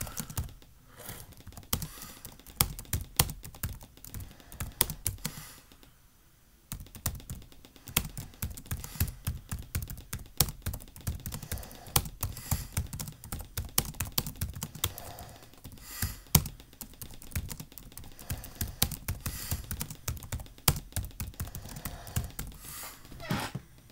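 Typing on a computer keyboard: a steady stream of key clicks, with a short pause about six seconds in.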